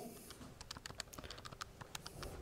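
Faint, quick clicks of a handheld calculator's keys being pressed one after another, about six presses a second.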